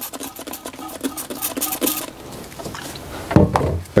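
Hand trigger spray bottle squeezed several times, each pump a click with a short hiss of isopropyl alcohol spraying into the fork lowers, over about the first two seconds. A single dull thump comes near the end.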